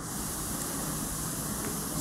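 Steady hiss of background noise that starts abruptly, with no speech over it.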